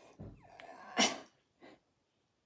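A house pet gives a short falling whine, then a sharp sneeze about a second in, which is the loudest sound.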